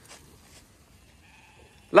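Faint bleating from a flock of ewes over quiet outdoor background, with a louder call starting right at the end.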